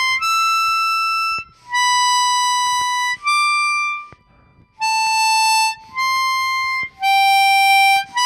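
Chromatic harmonica played slowly, one clean sustained note at a time, about seven notes of roughly a second each with short breaths between, working down through a pattern in thirds.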